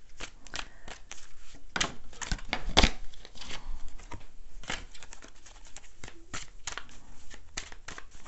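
A deck of tarot cards being hand-shuffled, the cards flicking and snapping against each other in an irregular run of short clicks, with a couple of sharper snaps about two and three seconds in.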